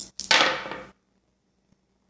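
Dice thrown from cupped hands onto a cloth-covered table, one short clatter that dies away within about a second.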